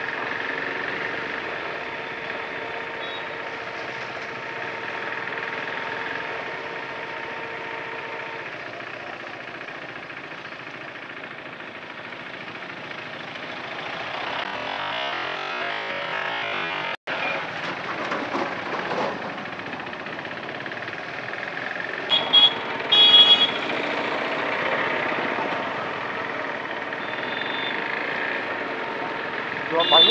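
Motorcycle engine running under way with steady road and wind noise while riding through city traffic. A vehicle horn beeps in two short bursts about three quarters of the way through.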